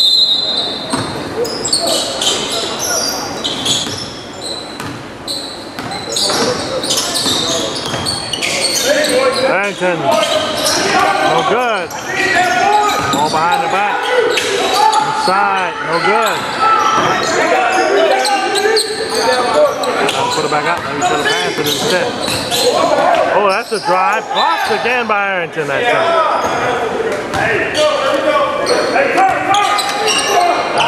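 Basketball dribbled and bouncing on a hardwood gym floor during live play, mixed with players' shouts and voices, all echoing in a large hall.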